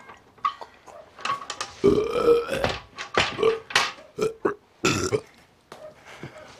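A woman retching into a metal bucket: a series of about five throaty heaves in the middle stretch, the first the longest.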